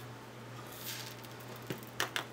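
Seed beads rustling faintly as a small plastic teacup is pressed and turned in a tray of them, with a sharp click near the end.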